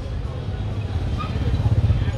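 City street traffic: a steady low rumble of passing motorbikes and cars, swelling a little near the end, with faint voices in the background.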